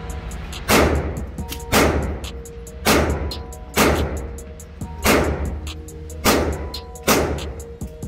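.22 LR semi-automatic pistol fired seven times, about one shot a second, each shot ringing off the walls of an indoor range, over background music.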